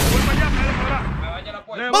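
Explosion sound effect: a sharp blast that rumbles on and fades away over about a second and a half.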